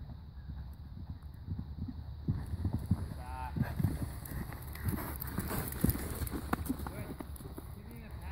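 Hoofbeats of a horse cantering on a sand arena surface: dull thuds that grow louder from about two seconds in as the horse passes close by, then ease off near the end.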